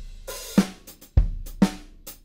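A groove played back on Superior Drummer 3's sampled acoustic drum kit: kick drum, snare, hi-hat and cymbals in a steady beat.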